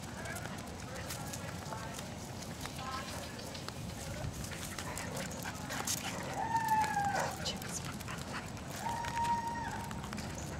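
Jack Russell Terriers whining: a high whine that drops in pitch just past the middle and another held steady near the end, with a few sharp clicks in between.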